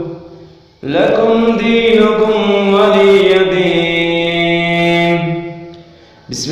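Quran recited in the melodic Pani Patti style by a single voice. After a short breath pause about a second in, one long phrase is drawn out on sustained held notes and trails off near the end.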